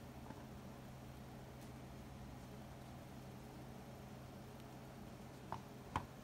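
Fingers tapping the crisp crust of freshly baked barley bread rolls: two light taps near the end, over a faint steady low hum.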